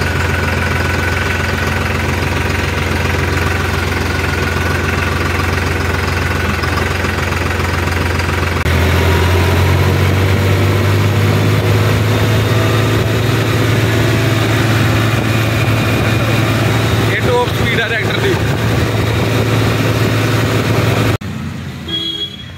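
New Holland 3630 4WD tractor's diesel engine running steadily, at first at a low, even speed. About nine seconds in it steps up to a slightly higher, louder pitch as the tractor is driven on the road. Near the end the engine sound drops away abruptly.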